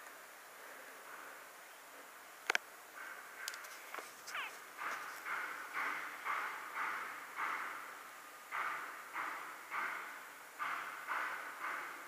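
Faint construction work: a sharp knock, then a steady run of short noisy strokes about twice a second.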